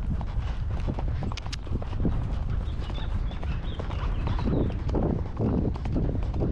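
A horse's hoofbeats on a grass track, heard from the saddle, in a steady rhythm over a constant low rumble.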